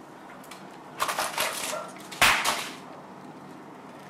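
A freezer being opened and rummaged: a run of clicks and rustling about a second in, then one loud knock a second later.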